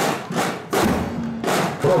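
Marching-band snare drums beating a marching rhythm, with strong strokes about every three-quarters of a second.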